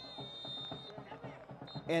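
Referee's whistle blown in long steady blasts, the final whistle ending the match: one blast lasting about a second, then a second starting near the end. Faint stadium crowd noise lies underneath.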